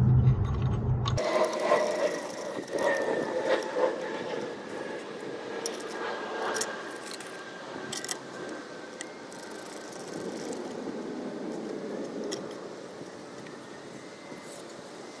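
Light clinking and scraping of stainless steel bolts, washers and nuts being handled and threaded by hand as a light-bar mounting bracket is fastened. A few sharper metal clicks come in the second half.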